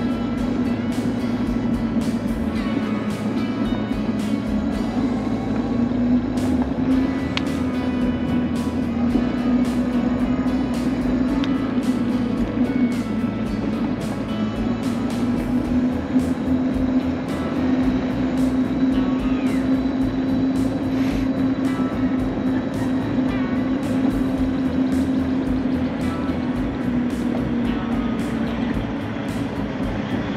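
Electric motor of a high-speed mobility scooter running at travel speed, a steady whine whose pitch drifts a little as the speed changes, with scattered small clicks and rattles as it rolls over the pavement.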